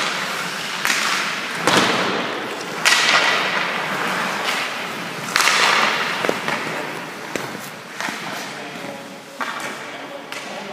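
Ice hockey sticks cracking against pucks and skate blades scraping the ice in a series of sharp hits, each followed by a hissing tail, echoing through the rink.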